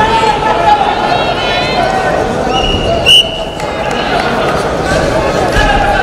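Voices shouting over an arena crowd. Near the middle, a referee's whistle is blown once for about a second; it is the loudest sound and signals the wrestlers to resume from par terre.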